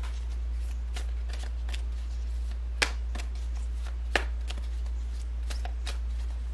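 Tarot deck being shuffled by hand: irregular card snaps and clicks, two sharper ones near the middle, over a steady low hum.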